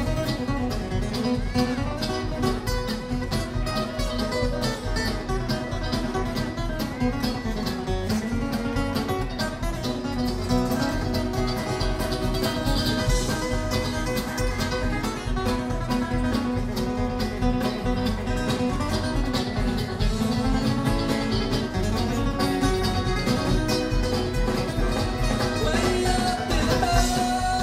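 Live bluegrass band playing an instrumental passage with no singing: mandolin, acoustic guitar, banjo and electric bass over a steady beat.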